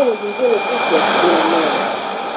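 Voice of Nigeria's Swahili-language broadcast received on shortwave AM (11770 kHz) with a Sony ICF-2001D: a voice speaking under heavy static hiss, with a faint steady high whistle.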